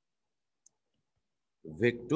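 Near silence with one brief, faint click a little after half a second in.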